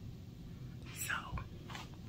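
Quiet speech: a woman says "So," about a second in, over a low steady hum.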